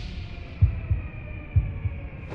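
Intro sound design: deep bass thumps in pairs, like a heartbeat, about once a second, under a faint high ringing tone that fades away.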